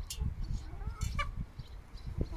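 A flock of chickens feeding, with short soft clucks and calls and a couple of sharp taps about a second apart, over a low rumble.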